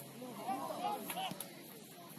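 Several voices shouting excitedly at once, their cries rising and falling in pitch through the first second and then easing off, with a single sharp tick about a second and a half in.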